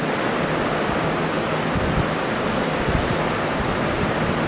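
Steady, even hiss of classroom room noise with a faint low hum underneath.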